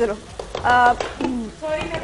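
Speech: a woman's voice in two short phrases.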